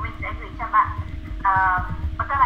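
A person's voice coming through video-call audio, thin and cut off at the top, with a steady low hum underneath.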